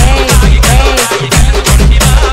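Telugu folk song DJ remix, loud, with a heavily boosted bass and a fast dappu drum beat, and a melody that bends up and down in pitch over it.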